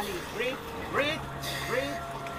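Short rising vocal calls from people around a freediver who has just surfaced, repeated about every half second. A low steady hum comes in about a second in.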